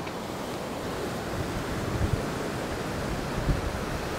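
Sea surf washing against a rocky shore, a steady rushing wash, with wind buffeting the microphone in a few soft low bumps.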